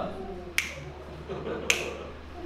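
Two crisp finger snaps, a little over a second apart, beating time for a staccato singing exercise.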